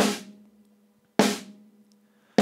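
Two snare drum hits about a second apart, from a snare track triggered by Drumagog drum-replacement samples. Each is a sharp crack with a short ringing tail. No kick-drum bleed triggers sound between them: with bleed reduction on, only the snare hits are heard.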